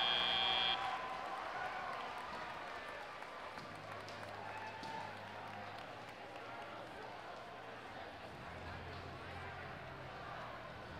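A steady high electronic tone from the field's sound system cuts off abruptly just under a second in, leaving an arena crowd's chatter with scattered applause.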